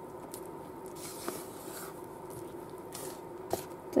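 Spatula slowly folding thick carrot cake batter in a plastic bowl: faint scraping and stirring against the bowl, with a few soft clicks, over a low steady hum.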